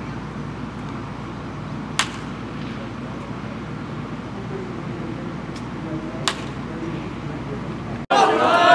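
Two sharp cracks of a wooden baseball bat hitting pitched balls in batting practice, about four seconds apart, the first the louder. Steady background noise lies underneath.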